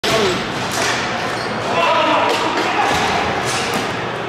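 Dek hockey play in a large indoor rink: several sharp knocks of sticks and the ball on the plastic tile court, with indistinct voices of players and spectators echoing in the hall.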